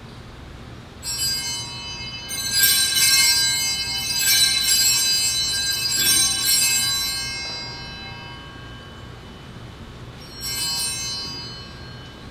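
Altar bells shaken in several rings at the elevation of the consecrated chalice, each ring dying away, with one shorter ring near the end.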